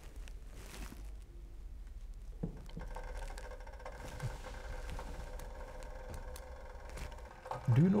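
Water heating in a stainless steel jug on an electric hot plate, not yet boiling: a faint steady hum, with a thin steady singing tone that comes in about three seconds in as the water warms.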